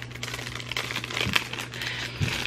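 Faint crinkling of plastic packaging with a few small clicks and ticks as a small boxed ornament is handled.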